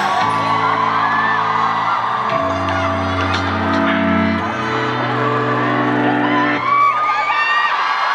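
Instrumental ending of a pop ballad: long held chords that change about every two seconds, with fans in the crowd screaming and cheering over the music.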